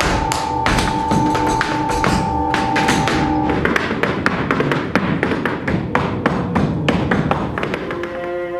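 Percussive dance steps in boots, a rapid, uneven run of heel and toe strikes on a stage floor. A steady held note sounds under the strikes and stops about halfway through.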